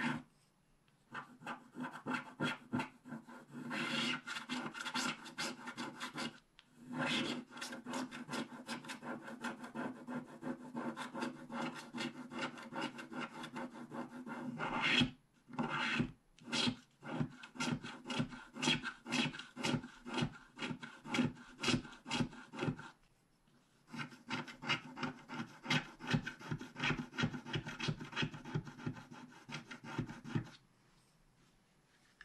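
Wooden stylus scraping the black coating off a scratch-art card in quick, short, repeated strokes, pausing briefly a few times.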